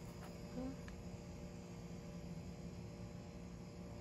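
Quiet outdoor background with a faint steady hum throughout. A woman's brief "huh?" comes about half a second in.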